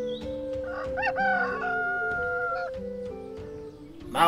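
A rooster crowing once, starting about a second in: a call that rises and then holds steady for about a second and a half, over gentle background music.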